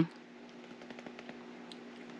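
Quiet room tone: a faint steady hum with a few light ticks.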